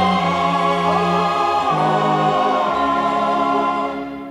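Christmas medley music: a choir singing long held chords over accompaniment, fading out near the end.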